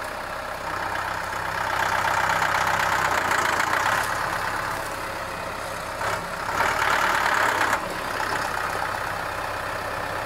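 Mahindra compact tractor's diesel engine running under the load of the front-end loader scooping and lifting gravel. It strains louder twice, from about two seconds in and again around seven seconds, and the second time cuts off sharply.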